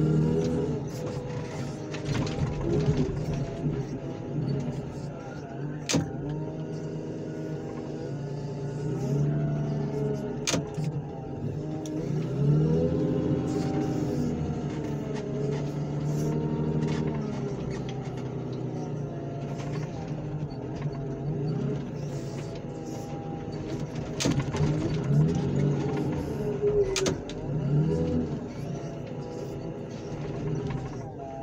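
Engine of a grapple loader running under hydraulic load, its pitch rising and falling several times as the arm lifts and carries a flattened car body, with a few sharp metal knocks.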